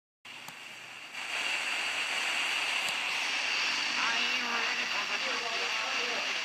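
FM radio receiver tuned to 106.9 MHz, hissing with static; the hiss grows louder about a second in, and a faint voice sounds under it from about four seconds in.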